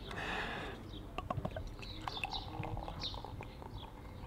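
Small birds chirping repeatedly in short high calls, with a few light clicks. Later, beer is poured from a bottle into a glass.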